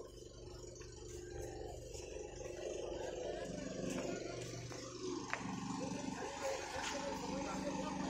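Faint distant voices over a low steady hum, with one sharp click about five seconds in.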